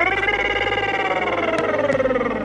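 A man's voice in one long drawn-out wail, rising at the start and then sliding slowly down in pitch.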